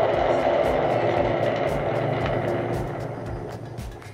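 Spinning cardboard prize wheel on a rotating base, a steady whirring rumble with a regular faint tick about three times a second, dying away as the wheel slows to a stop.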